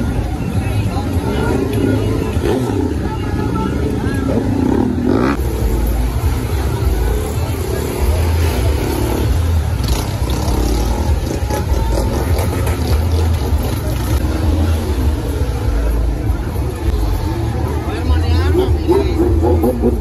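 Vehicle engines running with a steady low rumble under the voices of a large crowd.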